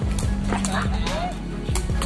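Music with a steady low bass line, with voices and short rising-and-falling calls over it about midway through. A few sharp knocks sound through it.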